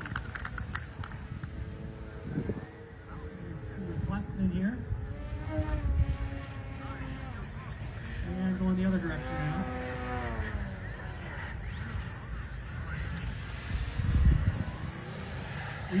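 Twin electric motors and 14x6 propellers of a large RC Twin Otter model in flight, the buzz rising and falling in pitch as the plane passes, over a low rumble of wind on the microphone.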